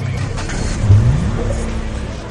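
Title-sequence music for a news show, with a produced sound effect that sweeps upward in pitch about a second in.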